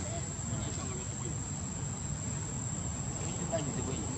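A steady, high-pitched insect drone holding one tone throughout, over a low background rumble.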